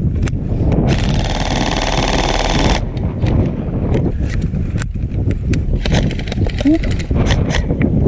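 An airsoft electric gun fires one sustained full-auto burst of about two seconds, a fast buzzing rattle, starting about a second in. Scattered single sharp clicks follow, over a steady low rumble.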